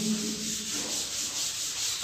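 Chalkboard being wiped with a duster: a steady rubbing across the board's surface.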